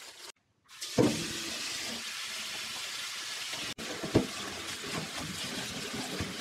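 Kitchen tap running onto leafy greens in a metal colander in a stainless-steel sink: a steady rush of water, with a clunk as it starts about a second in and another a few seconds later as the greens are handled.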